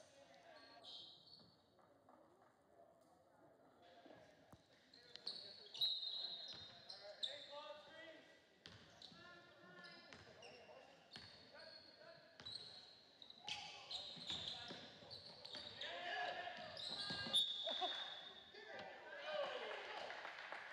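Basketball being dribbled on a hardwood gym floor during a game, with players' and spectators' voices.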